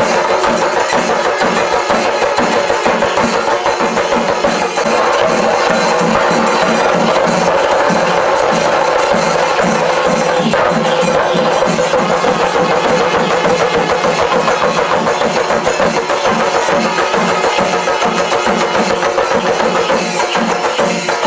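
Chenda drum ensemble playing a loud, fast, steady rhythm, about three strokes a second, without pause.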